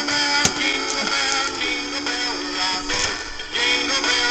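Animated dancing Santa figure playing its built-in song: a recorded singing voice with music, moving through long held notes.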